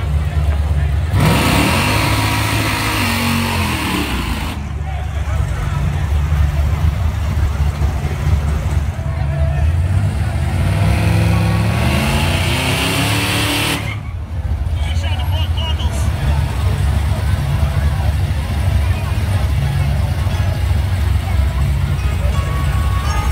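Big-rim donk car engine revving hard in two long bursts, the pitch climbing and falling each time, about a second in and again from about nine seconds in, over a steady low rumble.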